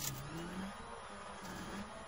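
Rally car engine heard from inside the cockpit at speed on a gravel stage, its revs rising and dropping several times.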